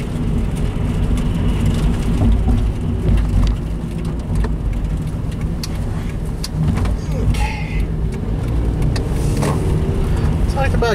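Car driving on a wet road, heard from inside the cabin: a steady low rumble of engine and tyre noise, with scattered faint clicks.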